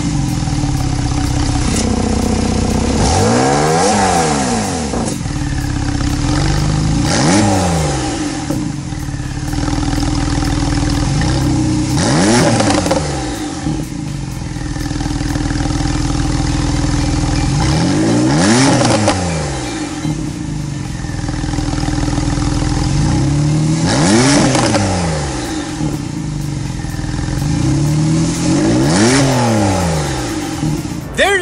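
2018 Porsche 911 Targa 4S (991.2) twin-turbo flat-six idling through its sport exhaust and being blipped about six times, each rev rising and falling back to idle.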